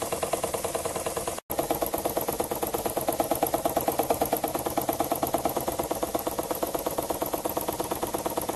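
A small model piston engine built from a spark plug, running on compressed air, makes a rapid, even chuff of exhaust pulses. The air exhausts through the rotary valve at the end of the crankshaft. The sound drops out for an instant about one and a half seconds in.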